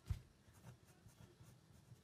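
Faint scratching of a ballpoint pen writing on paper, with a soft low thump just after the start.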